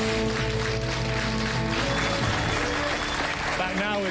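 Talk-show theme music over studio audience applause. The music stops about two seconds in, leaving the applause, and a man starts speaking near the end.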